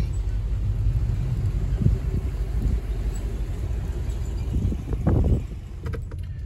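Low steady rumble of a car, heard from inside the cabin, with a brief louder sound about five seconds in.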